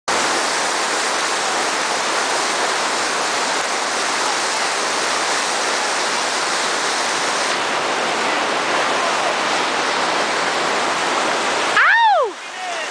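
Snowmelt whitewater rapids of a creek in high flow: a steady, loud rush of churning water. Near the end a person gives one short, loud shout.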